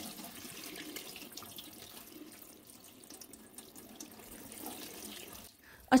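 Kitchen tap running into a stainless steel sink while mint leaves are rinsed in a colander, a steady, fairly quiet splashing that stops shortly before the end.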